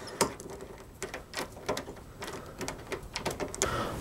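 Key jiggling and turning in a brass doorknob's pin-tumbler lock, a run of small irregular clicks and rattles. The key is coated with pencil graphite to free the sticky lock, which now turns better but is still not perfect.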